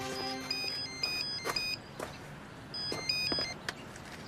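A telephone ringing with an electronic trilling ring in two bursts, as background music fades out.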